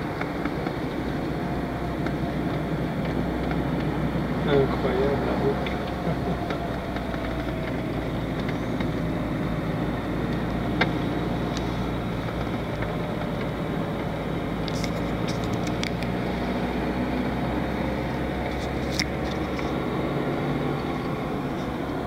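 Steady road noise of a moving car heard from inside the cabin: a low engine and tyre rumble at an even level, with a few faint ticks in the second half.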